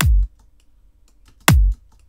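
Electronic kick drum played through a compressor set to a slower attack, so more of the clicking leading edge gets through before gain reduction: more thumping attack. Two hits about a second and a half apart, each a sharp click dropping quickly in pitch into a low thump.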